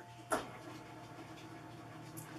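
Cricut Maker 3 cutting machine just switched on: a short click about a third of a second in, then a faint steady hum as the machine powers up.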